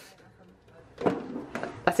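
Handling noise as a NutriBullet blender is moved on a windowsill: quiet at first, then a knock and a few clicks from about a second in.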